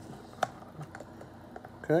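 One sharp click about half a second in, then a few faint light ticks: the battery cover of a Sleep Number 360 smart bed remote being picked up and handled against a wooden nightstand.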